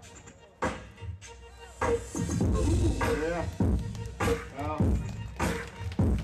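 Battle music played over a sound system, with a heavy steady beat of about one and a half beats a second. The beat is nearly absent for the first half-second, and a sung or rapped vocal line runs over it in the middle.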